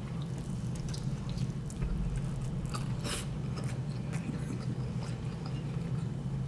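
Close-up chewing of rotisserie chicken: wet mouth smacks and small clicks, irregular and scattered, over a steady low hum.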